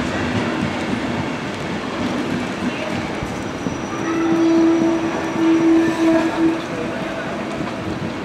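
Intercity passenger coaches rolling past slowly as an arriving train runs into the platform, a steady rumble of wheels on rail. About halfway through a strong steady squeal rises out of it for about two and a half seconds, breaking off twice before it fades.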